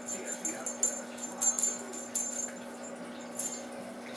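Feathered cat wand toy with tinsel streamers jingling and rustling in quick high bursts as kittens bat and grab at it, over a steady low hum.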